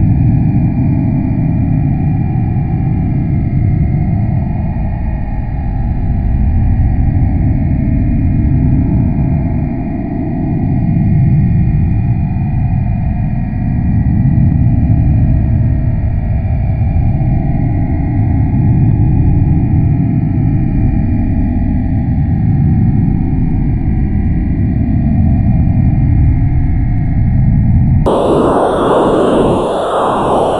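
NASA's sonification of the black hole in the Perseus galaxy cluster: its pressure waves shifted up into hearing range, a deep, low drone that slowly swells and fades. About two seconds before the end it cuts abruptly to a different, brighter, noisier sound.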